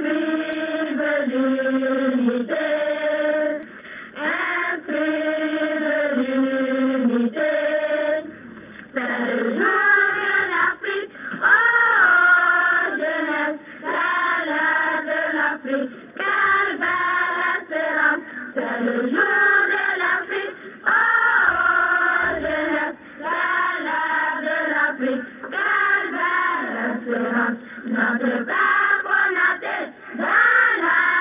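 Children's choir of young pioneers singing a patriotic, revolutionary song, phrase after phrase of held notes with short breaks between them.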